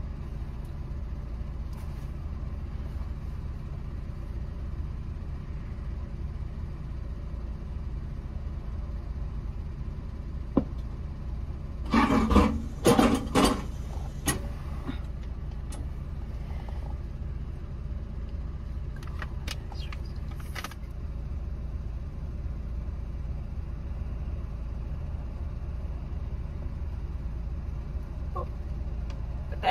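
Car engine idling, a steady low rumble heard from inside the cabin. About twelve seconds in come a couple of seconds of rustling and clicking handling noises, with a few lighter clicks around twenty seconds in.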